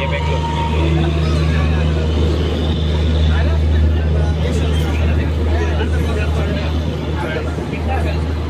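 Passenger train rolling slowly along a station platform, heard from the coach door: a steady low rumble, with voices and chatter from the crowded platform on top.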